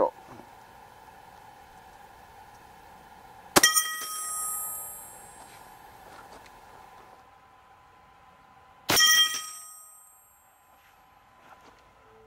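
A 12-gauge shot firing a slow, subsonic slug, followed at once by the metallic ring of the thick aluminum plate target being struck. A second report with the same ringing comes about five seconds later.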